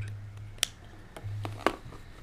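Small plastic clicks and handling of a USB programming tool's connector being fitted onto the flight controller's header pins: two sharp clicks about a second apart, with a few fainter ticks, over a low hum.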